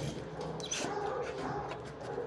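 Shelter dogs barking and whining in a kennel block, over a steady hum.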